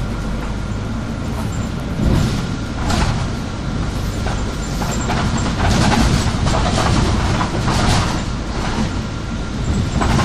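Inside a moving city bus: the engine runs with a steady low hum as it drives along. Rattles and knocks from the bus body come about two and three seconds in and again, more densely, past the middle.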